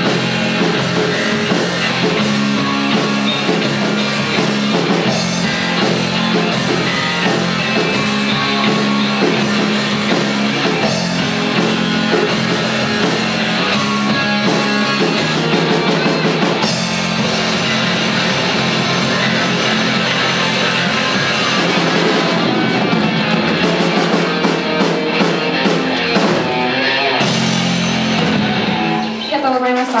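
Rock band playing live and loud: a drum kit and electric guitars over bass, with a short drop in level near the end.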